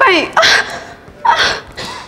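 A woman's voice in an acted emotional outburst: a high wail falling in pitch at the start, then two sharp, breathy sobbing gasps about half a second and a second and a half in.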